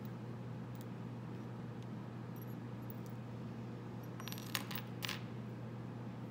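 Small hard stamps and tools clicking and clinking against each other and the wooden tabletop as a hand sorts through them, with a cluster of clinks about four to five seconds in. A steady low hum runs underneath.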